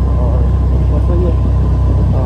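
Steady, loud low rumble of wind buffeting a phone's microphone on a moving scooter, mixed with the scooter's engine and road noise.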